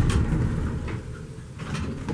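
Low rumble inside the cab of a vintage R&O hydraulic elevator as the car runs, easing off after about a second and a half.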